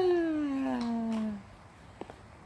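One long drawn-out voice sliding steadily down in pitch, which stops about one and a half seconds in.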